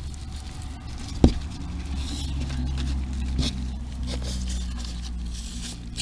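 Hands rustling and crunching damp shredded paper bedding in a plastic worm bin while covering food scraps, over a steady low hum. A single sharp knock comes about a second in.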